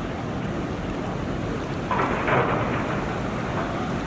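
Water gushing out of an outlet at the base of a concrete dam into the river, a steady rushing noise. About two seconds in a brief louder sound falls in pitch.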